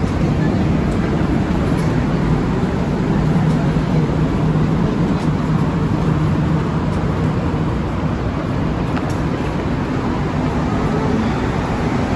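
Montreal Metro rubber-tyred train running, a steady rumble with a low hum, heard from inside a crowded car.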